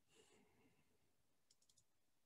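Near silence, with a brief soft hiss near the start and a quick run of four faint computer mouse clicks about a second and a half in.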